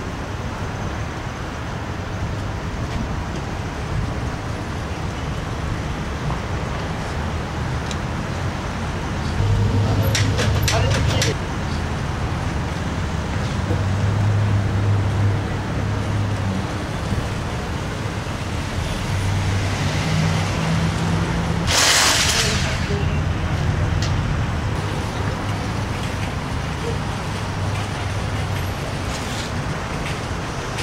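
Indistinct background voices over a steady low rumble of ambient noise, with a few sharp clicks about ten seconds in and a short hiss a little after twenty seconds.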